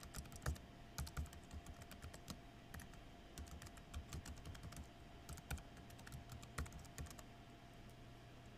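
Typing on a computer keyboard: faint, quick, irregular key clicks, several a second with short pauses.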